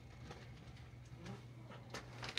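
Quiet indoor room tone: a steady low hum with a few faint clicks.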